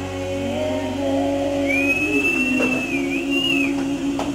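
A live band's last chord held and ringing out. A little under two seconds in, a long, high, steady whistle from the audience joins it, wavering once near its end.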